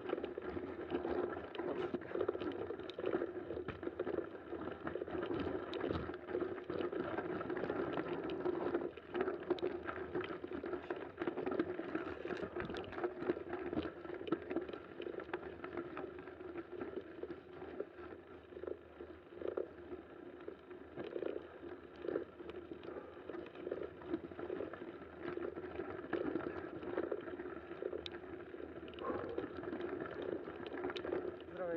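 Mountain bike climbing slowly on a snowy trail: steady tyre noise on snow, with frequent small clicks and rattles from the bike.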